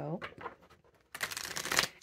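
A deck of tarot cards being shuffled by hand: a quick burst of card edges riffling, lasting just under a second and starting a little past halfway.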